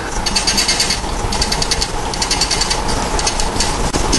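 Felt-tip marker squeaking and scratching on a whiteboard as a word is written, in quick rapid strokes grouped into several short bursts.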